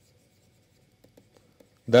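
Faint light ticks and scratches of a stylus writing by hand on a digital pen tablet, a few small taps about a second in.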